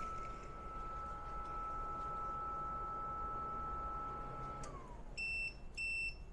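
Appliance motors under load (heat gun and heater) running with a steady whine that winds down in falling pitch about four and a half seconds in, as the ALLPOWERS R1500 power station's inverter shuts off on overload. Then the power station beeps twice near the end as an alarm.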